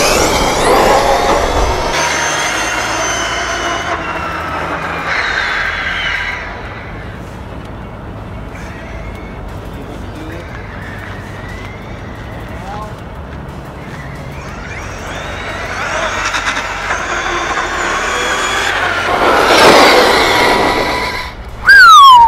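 Losi LST 3XL-E 1/8-scale electric monster truck at full speed, its motor whining with shifting pitch. The sound is loud at first, dies down for several seconds as the truck runs far off, then builds again to a loud peak as it comes back, with a quick falling pitch near the end.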